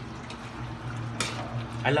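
Dinuguan simmering in a steel wok on a gas burner, with a metal ladle scraping through the stew about a second in, over a low steady hum.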